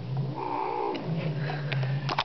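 Domestic cat growling, a low steady rumble that sounds like a motorcycle, rising into a wavering yowl about half a second in before settling back to the growl.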